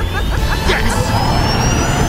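Action music with a steady bass line, and over it a high, thin whine rising slowly in pitch through the second half: the electric motor of an animated Porsche Mission E accelerating on a track.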